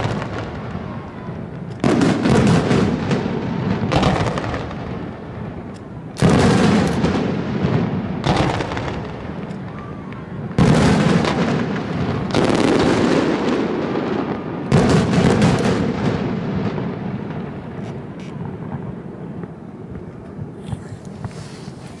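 Aerial firework shells bursting, about seven loud bangs roughly two seconds apart, each followed by a long rumbling echo that dies away. The bangs thin out and grow fainter near the end.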